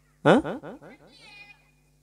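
A single short meow-like cry that rises and then falls in pitch, trailing off in an echoing fade.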